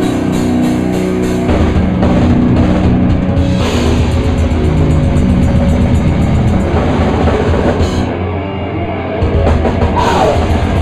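Death metal band playing live: distorted electric guitars and bass over a drum kit with cymbals. The drums and cymbals drop out for about a second around 8 seconds in, then the full band comes back in.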